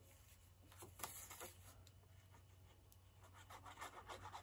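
Near silence with faint handling noises: light rustling of card stock and small clicks from a plastic liquid-glue bottle being picked up, the clearest click about a second in.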